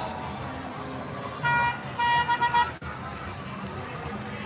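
Golf cart horn honking: one short steady blast about one and a half seconds in, then a quick run of three or four toots, over a background of crowd chatter.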